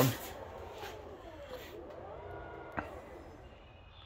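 2022 Tesla Model X falcon wing door powering open: the door motors give a faint whine that falls in pitch and then rises again, with a short click about three seconds in.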